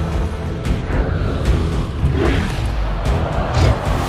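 Film score with a strong low end, cut through by several sharp clashes of sword blades striking each other.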